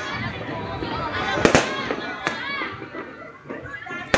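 Fireworks exploding: a loud double bang about one and a half seconds in, then a smaller bang a little after two seconds, with voices going on nearby.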